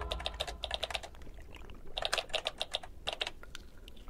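Computer keyboard typing: three quick runs of keystrokes with short pauses between them.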